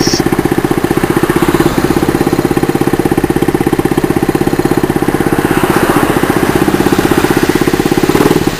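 A 48 cc four-stroke single-cylinder mini chopper engine idling with a steady, even beat.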